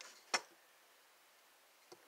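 A single sharp click as a hand-carved wooden knife is handled, about a third of a second in, then faint room tone with a much softer tick near the end.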